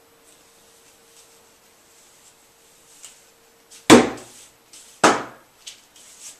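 Two sharp, loud knocks about a second apart, a little after the middle, over faint quiet with a low steady hum.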